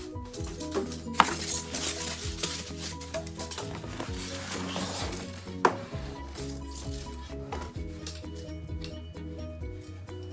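Handling of flat-pack cabinet parts: plastic wrapping rustles for a few seconds while panels are moved, with two sharp knocks, one about a second in and one just past the middle. Background music with a steady bass line plays throughout.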